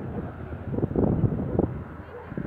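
Wind buffeting the microphone: an irregular low rumble in gusts, loudest around the middle.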